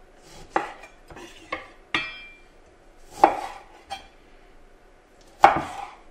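Chef's knife slicing through a lime and knocking down onto a wooden cutting board: about six sharp knocks spread unevenly, the loudest near the end, one followed by a brief metallic ring.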